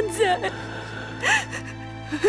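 A woman's voice speaking, with a gasping breath about a second in, over soft sustained background music.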